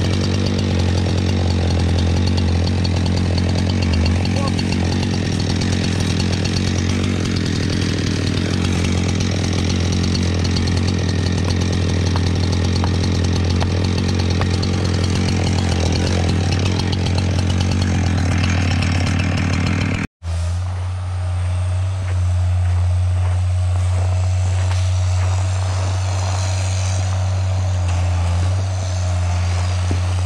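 Husqvarna chainsaw running at high throttle, bucking through a large felled log, steady for about twenty seconds. After a sudden break the engine sound goes on, steadier and with less of the cutting hiss.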